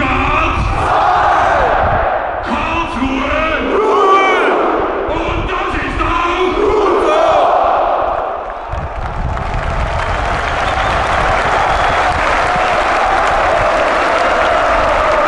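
Large football stadium crowd shouting and chanting in celebration of a goal. About nine seconds in, the shouts give way to a steady roar of cheering and applause.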